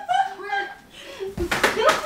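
A woman laughing uncontrollably, high-pitched, with a few sharp smacks about one and a half seconds in.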